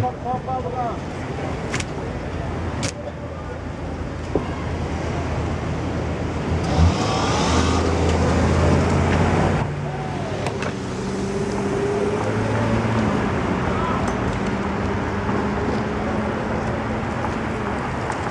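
City street traffic: a car's engine and tyres build to a close pass, and the sound drops off sharply about ten seconds in. After that a steady low engine hum goes on, with a few voices in the background.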